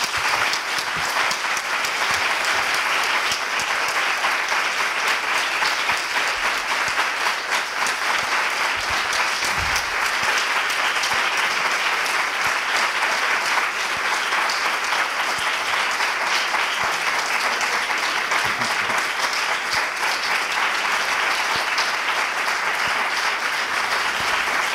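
Audience applauding steadily, a dense continuous clapping from many hands, following the close of a lecture.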